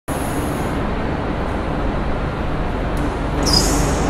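Bus engine running with steady road noise, a continuous low rumble. A short hiss comes near the end.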